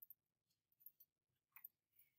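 Near silence, with a handful of faint, short clicks of a computer mouse spread through it.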